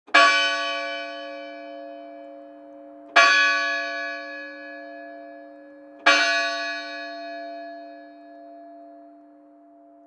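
A bell struck three times, about three seconds apart, each strike ringing on and slowly fading, with a low hum lingering after the last.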